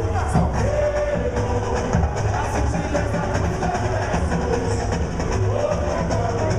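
Samba music: a drum section beating a steady, driving rhythm under a sung melody.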